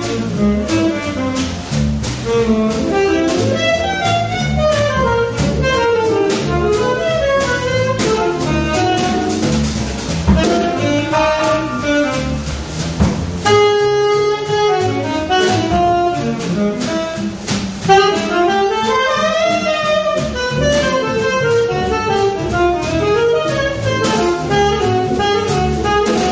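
Live jazz improvisation: a lead instrument plays quick melodic runs over a bass line and drums, with one long held note about halfway through.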